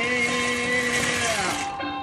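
Dry egg noodles poured from a plastic bag into a steel stockpot, a steady rustling hiss that stops about three-quarters of the way through.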